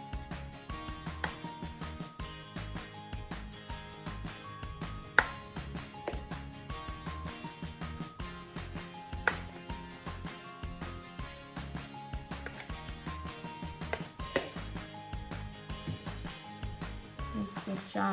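Background music with held notes over a steady beat. A few sharp clicks of a metal spoon against the bowl and filling are heard over it, the loudest about five seconds in.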